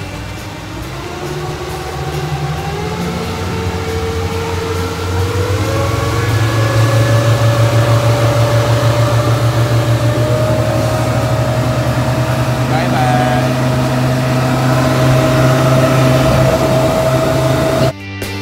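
Twin Suzuki 150 outboard motors driving a speedboat. Their pitch rises over a few seconds as they throttle up, then holds steady at cruising speed.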